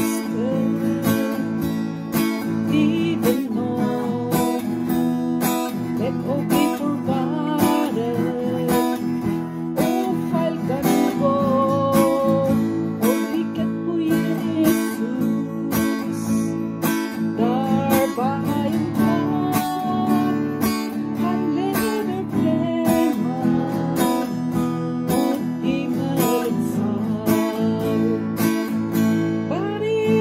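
A woman singing a Norwegian gospel song, accompanying herself on a strummed acoustic guitar.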